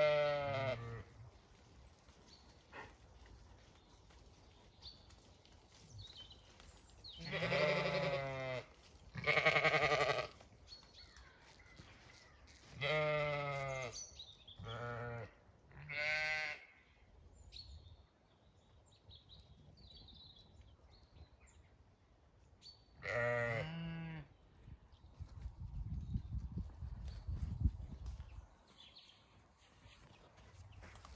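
Zwartbles sheep bleating, about seven calls of roughly a second each with long gaps between them. A low rumbling noise comes near the end.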